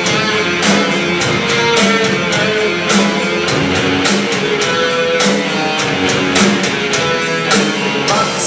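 Live rock band playing: electric guitar and bass guitar through amplifiers over a drum kit keeping a steady beat, with no vocals.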